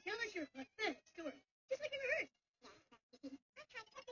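High-pitched, squeaky cartoon character voice chattering in short, rapid syllables with no recognisable words.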